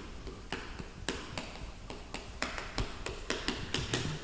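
Chalk writing on a blackboard: about a dozen quiet, irregular sharp taps and short scrapes as the chalk strikes and drags across the board.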